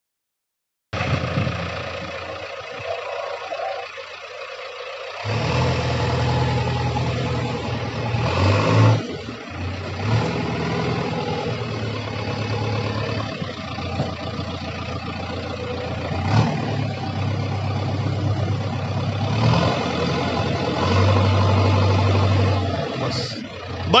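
JCB 3DX backhoe loader's diesel engine working as the machine drives and levels soil with its front loader bucket. It runs quieter for the first few seconds, then steps up about five seconds in to a steady, louder hum that rises and dips several times as the load changes.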